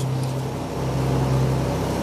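Steady low machinery hum aboard a boat, a constant drone with no change in pitch.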